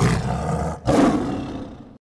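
A tiger roar sound effect in two parts. It starts suddenly, breaks off briefly just under a second in, then comes back about as loud and fades away.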